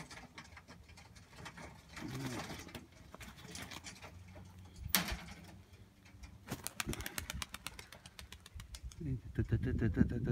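Domestic pigeons cooing, with one sharp click about five seconds in and a run of rapid clicks in the second half.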